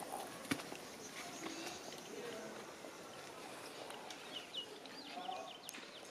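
A hen held in the hands gives faint clucks and squawks, with small birds chirping in the background. There is a sharp click about half a second in.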